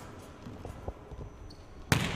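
Volleyball being struck hard on a jump serve: one sharp, loud smack near the end, after a couple of faint taps against low arena hall noise.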